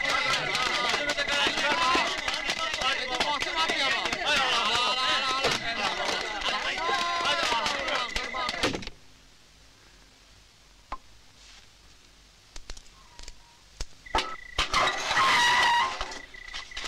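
A crowd of men shouting, laughing and cheering all at once as they jostle together, with a steady high tone running under the voices. About nine seconds in the noise cuts off to a quiet stretch with a few faint clicks, and loud voices return near the end.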